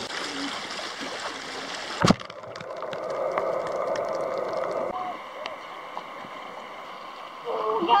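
Small waves washing onto a sand beach. About two seconds in, a sudden cut switches to the sea heard from a camera underwater: a muffled, gurgling wash with many small sharp clicks.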